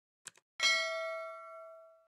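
Subscribe-button sound effect: two quick mouse clicks, then a notification-bell ding that rings out with several clear tones for over a second before cutting off.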